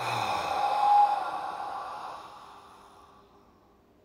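A man's deep exhale through the open mouth, a loud sigh-like breath out releasing a big inhale in a breathing exercise. It starts suddenly, is loudest about a second in, and fades away over about three seconds.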